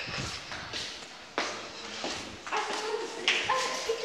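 Footsteps walking along a hard-floored corridor, a step roughly every half second, with a few sharper ones in the middle.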